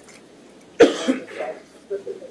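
A single loud cough about halfway through, sharp at the start and trailing off into a short voiced rasp.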